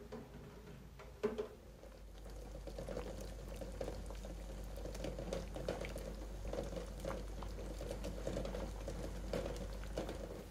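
Water bubbling at the boil around eggs in an aluminium saucepan, a steady crackling patter that builds about two seconds in and then holds. A single sharp knock just over a second in.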